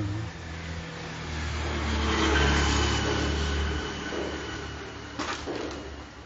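A motor vehicle passing on the road: its engine and tyres grow louder to a peak about two seconds in, then fade away. A short knock follows near the end.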